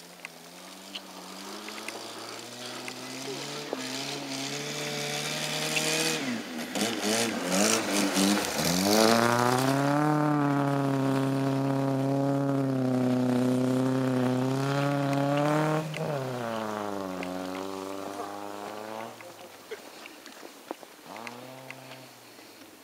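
A car driven hard on a snowy field, its engine rising in pitch as it accelerates. A noisy rush of snow and tyres comes partway through, then the engine holds high revs. About two-thirds of the way through the pitch drops suddenly, as at a gear change, climbs again, and fades away.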